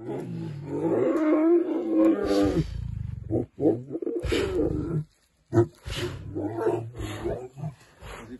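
Male lion roaring: a long call of about two and a half seconds, then a string of shorter, deeper grunts.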